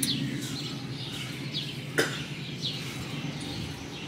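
Birds chirping: short, high, falling chirps repeated about once a second, with a single sharp click about halfway through.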